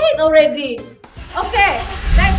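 A woman speaking over background music; about a second in, a low rumbling noise starts underneath and grows louder.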